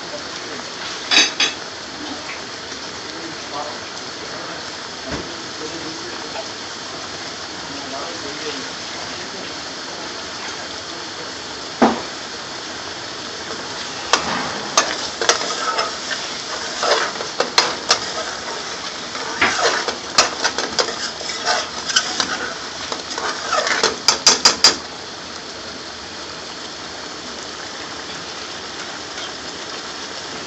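Thick curry sauce simmering and bubbling in an aluminium pan on a gas burner. A metal ladle knocks once or twice against the pan, then scrapes and clinks repeatedly against it while stirring for about ten seconds from just before the middle.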